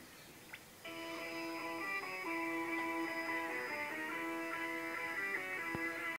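Pop music from a shortwave broadcast playing through an Eddystone Model 1001 receiver's speaker. It comes in about a second in, sounding thin and narrow, with no highs, over faint hiss.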